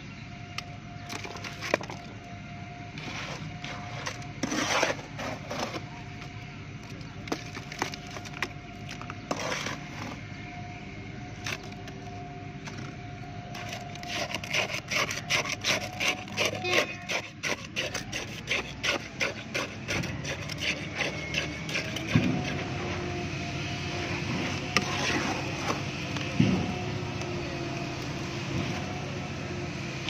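Tamping rod rodding fresh concrete in a steel test-cylinder mould: scattered knocks and scrapes, then from about halfway through a run of quick strikes, several a second, lasting several seconds. A steady hum follows near the end.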